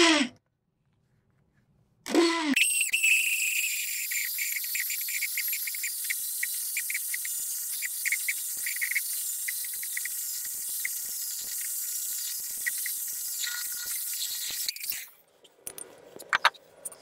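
Corded electric drill with a Forstner-type bit boring a hole through a painted wooden board: a steady high motor whine with a rapid crackle of the bit cutting wood. It starts about two seconds in and stops about a second before the end.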